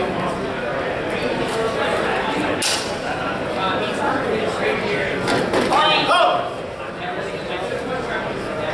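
A single sharp clash of steel longsword blades about a third of the way in, over steady voices chattering in a large hall; a voice calls out loudly a little after the middle.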